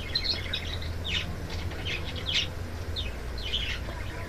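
A bird chirping: short high chirps, several in a row at irregular spacing, over a low steady hum.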